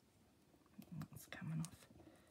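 A woman's voice muttering quietly under her breath about a second in, too low to make out words, with a few faint ticks of hands handling small pieces of foam tape.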